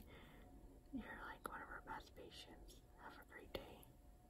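Faint whispering by a woman's voice, breathy and without voiced tone, in two short stretches, with a few soft clicks.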